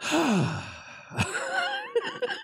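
A man's long, heavy sigh, voiced and falling in pitch, followed by a short wavering laugh.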